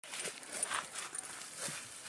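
Puppy rummaging in grass and weeds: soft rustling of leaves and stems, with a few faint clicks.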